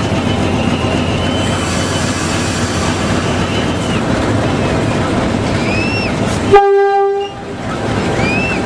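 GE U15C diesel-electric locomotive's 12-cylinder engine running under way, heard from the cab, with one short horn toot about six and a half seconds in.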